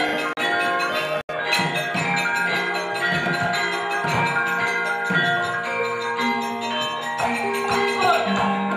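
Javanese gamelan ensemble playing wayang kulit accompaniment, its bronze metallophones and gongs ringing in steady, regularly struck tones. The sound drops out for an instant about a second in.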